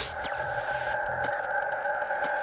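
Synthesized sound effect of an animated logo intro: a steady electronic drone of several held pitches, with faint falling whooshes above it.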